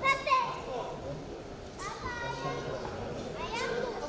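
Spectators and corner coaches shouting at a boxing bout: several short, high-pitched yells, the loudest just at the start, another around the middle and one near the end.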